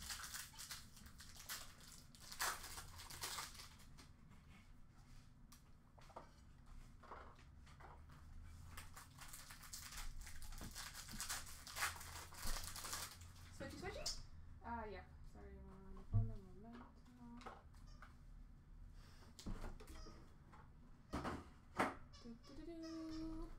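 Trading cards being handled and sorted by hand: faint, quick, scratchy rustling and crinkling for the first fourteen seconds or so. After that a voice speaks faintly in the background.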